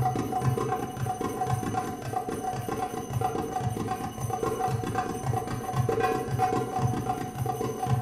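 Middle Eastern drum music for belly dance, led by a goblet drum (darbuka) playing a steady, fast rhythm of deep strokes.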